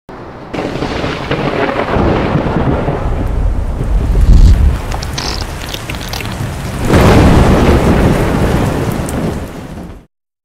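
Rain and thunder sound effect: steady heavy rain with a thunderclap about four seconds in and a longer roll of thunder from about seven seconds, fading out near the end.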